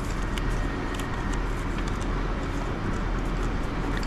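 Steady hum of a metro station concourse, with a few faint light clicks as a banknote is pushed into a ticket machine's note slot.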